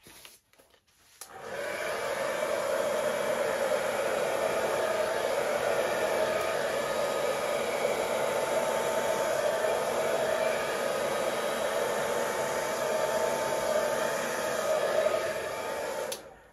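A hair dryer running steadily, switched on about a second in and cutting off at the very end, blowing wet acrylic paint outward across a canvas in a Dutch pour.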